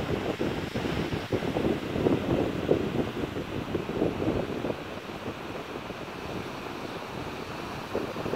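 Ocean surf washing onto a beach, with wind buffeting the microphone. It is louder and more uneven for the first five seconds, then settles to a steadier, quieter rush.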